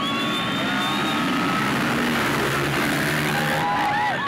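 A pack of motocross dirt bikes revving hard together as they accelerate away from the start, a dense, steady engine noise with thin high whining tones over it.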